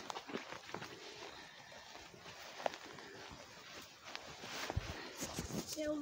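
Footsteps through rough grass with rustling and small knocks from the handheld phone, fairly quiet and irregular; a sharp click right at the start.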